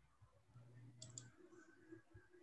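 Near silence with two faint, quick clicks of a computer mouse about a second in, over a faint low hum.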